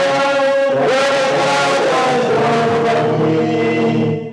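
Voices singing a hymn in a chanting style, holding long sustained notes.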